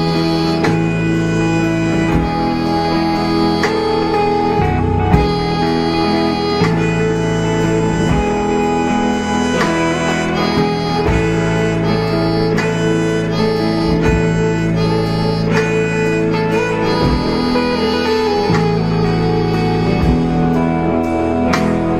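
Live rock band playing an instrumental passage on electric guitars, bass guitar and drum kit, with long sustained notes and a change or strike about every second and a half.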